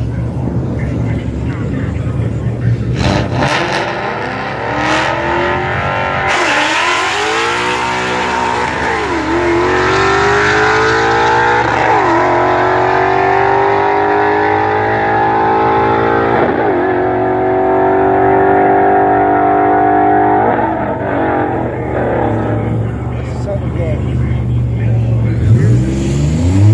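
Ford Mustang 5.0's Coyote V8 idling at the line, then launching at full throttle down the drag strip, its revs climbing and dropping sharply at each of four gear changes of its manual gearbox before the sound fades into the distance.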